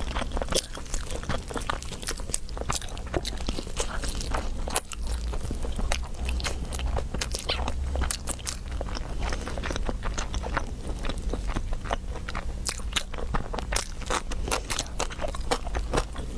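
Close-miked biting and chewing of roast chicken, a dense run of irregular wet clicks and crunches from the mouth and crisp skin, over a low steady hum.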